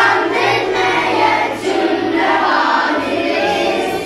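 A group of schoolchildren singing together in unison as a choir, in continuous sung phrases.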